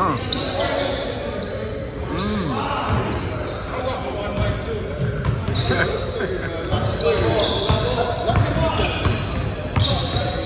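Basketball bouncing on a hardwood gym floor during a pickup game, with sharp knocks of the ball and footwork amid players' voices, echoing in a large hall.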